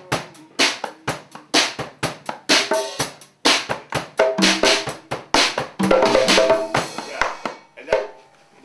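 Drum kit played with sticks, the snare damped by sheets of paper laid on its head to keep it quiet: a steady groove of strokes about two a second that turns busier, with ringing drum tones, from about four seconds in, then stops near the end.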